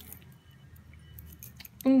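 Faint jingling of metal necklace chains and pendants as a hand sorts through them on the hooks of a jewellery cabinet, with a few light clinks near the end.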